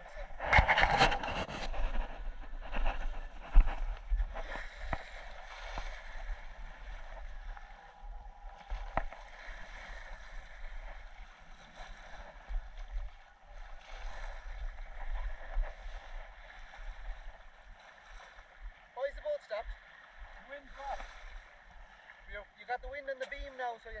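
Wind buffeting the microphone and water washing along the hull of a sailing yacht under way. The rumble is heavier in the first half and comes in gusts later. Faint voices are heard near the end.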